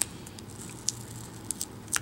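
A handful of faint, short clicks and scrapes from a hobby knife's metal blade working under the adhesive tape that covers a laptop screen's video-cable connector.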